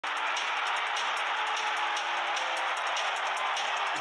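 Intro music over a steady, even crowd-like noise, with faint sustained notes underneath and a light regular ticking beat.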